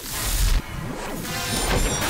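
A cartoon sci-fi zap effect of a creature power disc being created in a machine: a loud noisy burst in the first half second, then a steadier hiss.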